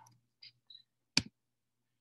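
A single sharp click about a second in, from a computer mouse clicked to advance the presentation slide, amid otherwise near-quiet room tone.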